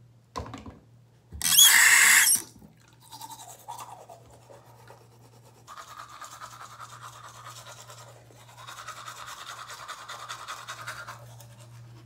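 Manual toothbrush scrubbing teeth: a wet, scratchy brushing that starts about three seconds in and goes on in stretches, over a low steady hum. Before it, a click and then a loud rush lasting about a second, the loudest sound here.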